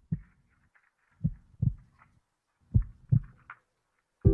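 Heartbeat sound effect: three double thumps, lub-dub, about one and a half seconds apart.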